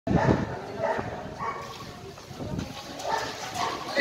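Short, separate shouts and calls from people at a basketball court.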